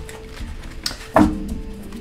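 Soft background music with held notes, and tarot cards being gathered up by hand, with a click and then a sharp thump a little over a second in as the deck is pushed together on the table.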